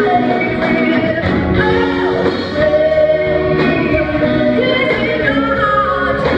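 Live band playing a song: drums, bass, electric and acoustic guitars and keyboard under a held, bending melody line, at a steady loud level.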